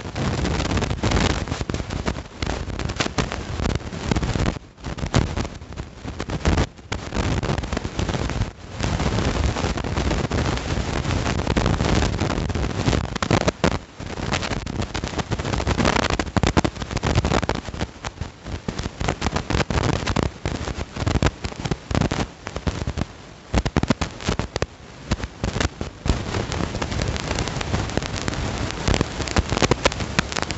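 Wind buffeting the microphone: a loud, ragged rumble and crackle that gusts unevenly, with a few brief dips.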